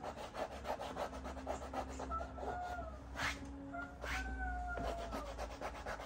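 Pencil scratching across drawing paper in quick, repeated sketching strokes, several per second, with two sharper strokes just past the middle. A few short squeaky tones sound over the strokes.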